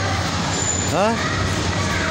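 Steady background noise of a busy outdoor walkway, with a person saying a short rising "haan" about a second in.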